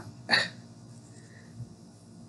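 A single short, sharp breath-like vocal sound from a person, then quiet room tone.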